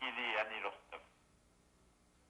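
A voice speaking over a telephone line, thin and narrow in tone, for about the first second, then a pause.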